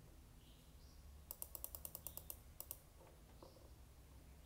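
Near-silent room tone with a quick run of about a dozen sharp, light clicks starting about a second in and lasting just over a second.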